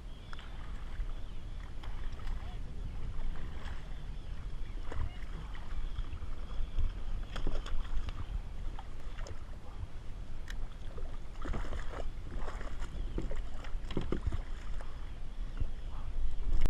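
Wind rumbling on the microphone over water lapping at a plastic kayak. Scattered short splashes and clicks come more often in the second half, as a hooked fish is brought alongside and splashes at the surface.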